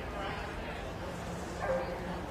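A dog gives one short yelp about one and a half seconds in, over a steady murmur of voices.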